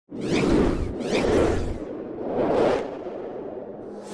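Three whoosh sound effects of an intro logo animation, the last about two and a half seconds in, then fading away.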